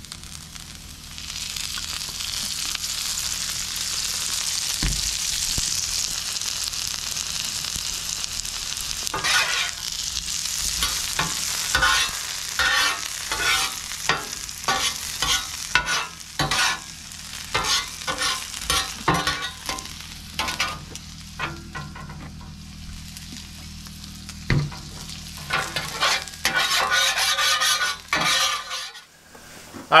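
Small halved potatoes sizzling in freshly drizzled olive oil on a hot propane flat-top griddle. In the middle comes a run of quick scrapes and clicks from a metal spatula turning them. The sizzle swells again near the end.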